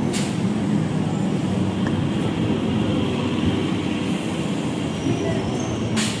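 Electric multiple-unit local train rolling in alongside the platform: a steady rumble of wheels and running gear, with faint high squeals near the end.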